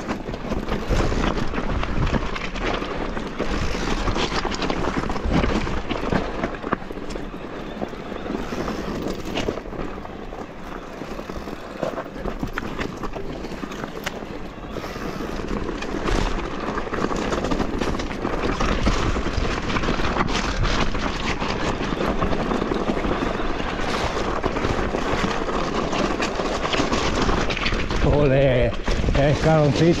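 Mountain bike riding down a loose, rocky trail: tyres crunching over stones, with constant rattling and knocking from the bike as it jolts over the rocks. A voice comes in near the end.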